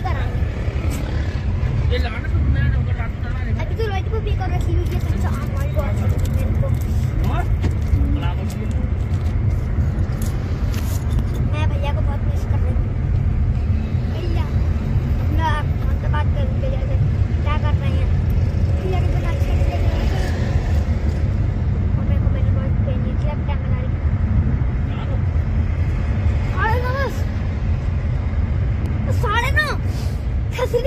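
Steady low rumble of a car on the move, heard from inside the cabin, with faint voices now and then.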